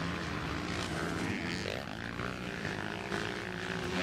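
Motocross bike engines running on the track, a steady drone.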